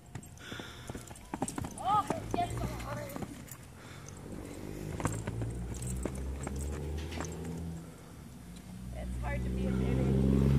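A young horse's hoofbeats on loose arena dirt as it trots around on a lunge line. A low engine hum comes in partway through and builds near the end.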